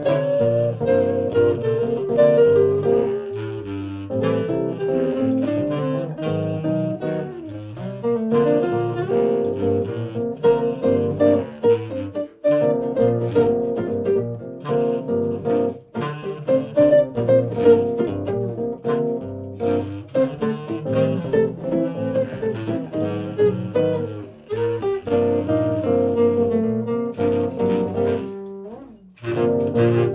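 Bass clarinet and amplified nylon-string silent guitar playing a smooth jazz improvisation together, the music dropping out briefly a few times.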